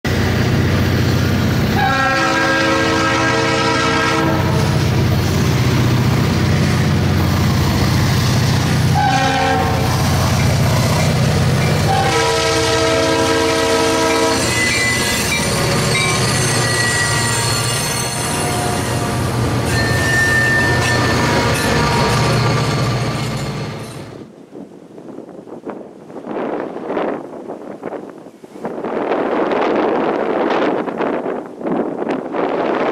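EMD diesel locomotives passing at close range with their engines running loud, while the lead unit's air horn sounds for the grade crossing: a long blast about two seconds in, a short one near nine seconds, and another long one from about twelve to fifteen seconds. The train sound cuts off abruptly about 24 seconds in.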